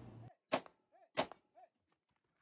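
Two faint rifle shots from a KP-15 carbine, about 0.7 seconds apart, fired at close-range steel targets.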